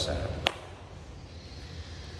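A pause in a man's speech: a single sharp click about half a second in, then a low, steady background hum.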